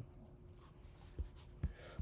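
Quiet room tone with two faint, brief low knocks, one just after a second in and another about half a second later.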